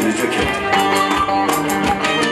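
Live Turkish folk band playing an instrumental passage: plucked string instruments and keyboard over a steady hand-drum beat, with no singing.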